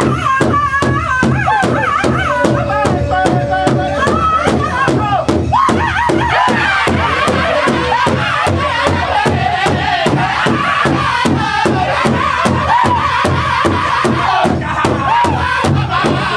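Powwow drum group singing in high, strong voices over a large shared hand drum struck in unison with drumsticks, in a steady beat about three times a second.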